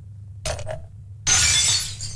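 White crockery smashing on a hard floor: a short clink about half a second in, then a loud shattering crash that lasts a little over half a second, over a steady low hum.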